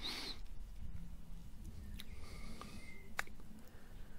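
Faint outdoor background broken by two short sharp clicks, about two seconds in and again a second later. One of them is an iron clipping the golf ball on a short chip shot.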